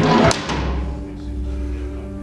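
A rusty iron well hatch being swung open: one sharp metallic clank right at the start, ringing away over about a second. Background music plays steadily underneath.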